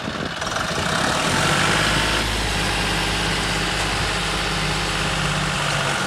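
John Deere 5310 tractor's diesel engine running steadily while the tractor drives a rotary tiller (rotavator) through the field.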